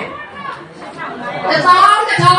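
A woman's speech over a microphone and PA in a large hall, with audience chatter. It dips quieter just after the start and picks up again near the end.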